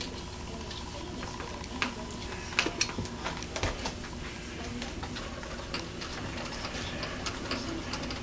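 Metal lathe turning with a home-made straddle knurling tool's two spring-loaded wheels rolling a fine knurl into a mild steel bar: a steady low hum with irregular light ticks and clicks.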